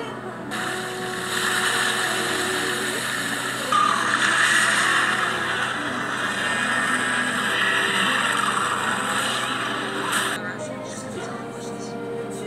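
Film soundtrack played through a television: a loud, sustained rushing noise effect over music, cutting off abruptly near the end, after which quieter music continues.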